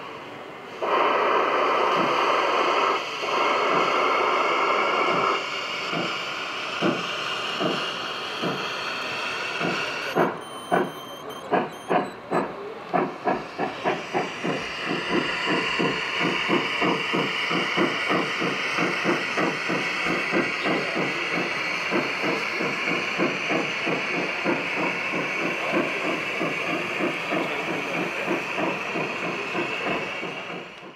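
Gauge 1 model steam locomotive blowing off a loud hiss of steam for a few seconds, then chuffing as it pulls away. The beats start about a second apart and quicken to a steady three or so a second.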